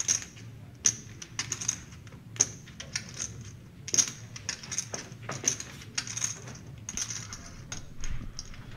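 Poker chips clicking together as they are handled at the table: sharp, irregular clacks, a few a second.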